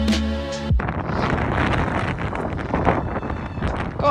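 Background music with a beat that cuts off abruptly less than a second in, followed by wind buffeting the microphone with a steady rushing roar.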